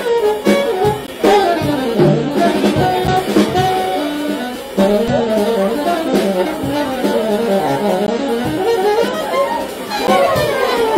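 Saxophone playing a fast, busy stream of short notes in runs that climb and fall, a show-off jazz solo, over a live band with drums and upright bass.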